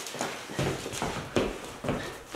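Footsteps thumping on a hardwood floor, four uneven knocks, with cloth rustling as a jacket is swung around and pulled on.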